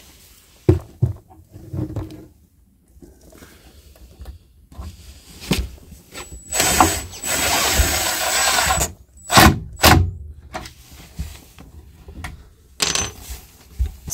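A cordless driver runs for about two seconds, driving a screw through the vertical slot of a drawer slide into the cabinet, with a thin high whine over its running noise. Sharp clicks and knocks of handled hardware and the tool come before and after it.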